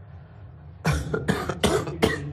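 A person coughing, a quick run of sharp coughs one right after another starting about a second in.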